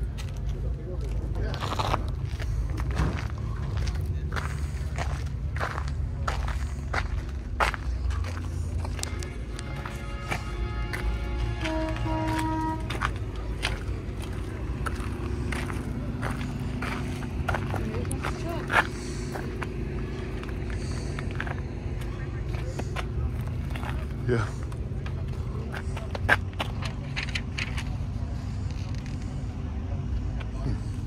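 Outdoor crowd ambience: distant talk and background music over a steady low rumble, with scattered footsteps and clicks. About ten seconds in, a short run of clear tones stepping up and down in pitch is heard for a few seconds.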